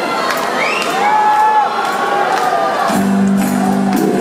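Live rock band playing in a large arena with the audience cheering and whooping over it; a held low note comes in about three seconds in.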